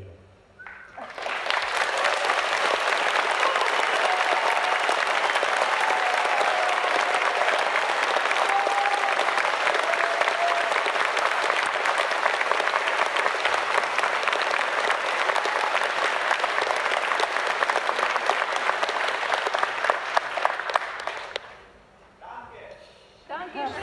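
Concert audience applauding, rising about a second in and dying away near the end, with a few faint calls from the crowd in the middle.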